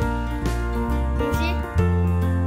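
Background music with steady notes, and a short electronic meow about a second and a half in from the plush toy cat being held.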